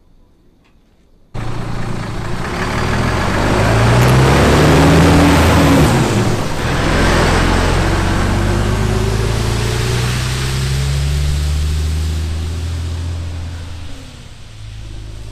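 Volvo FH 540 tractor unit's 13-litre six-cylinder diesel pulling away under load with a low loader carrying a combine harvester. The engine comes in abruptly about a second in, its note rising as it accelerates past close by. It then runs on steadily and fades a little as the lorry draws away.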